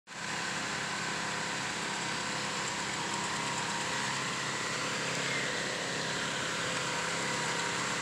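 A machine running steadily, with a constant hum of several fixed pitches over an even rushing noise that does not change.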